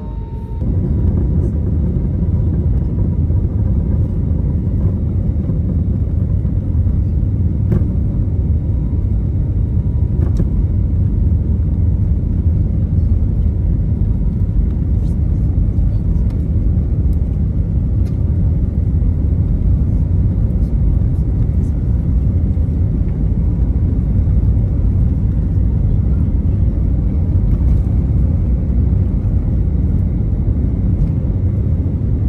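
Cabin noise of an Airbus A321neo rolling on the ground before take-off: a loud, steady low rumble of jet engines and wheels on the runway. It jumps up suddenly about half a second in and then holds even, with a few faint ticks.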